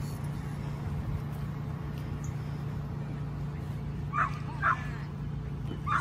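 A dog barking twice in quick succession about four seconds in, over a steady low hum.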